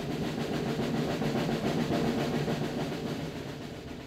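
A drum roll that builds up, then fades away near the end.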